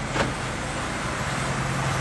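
Car engine running with a steady low hum, and a brief sharp sound just after the start.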